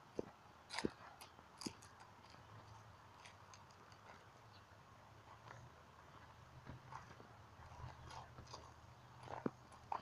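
Faint, scattered crunches and clicks of footsteps on a gravel-and-grass driveway, a few sharper ones in the first two seconds and near the end, over a faint low hum.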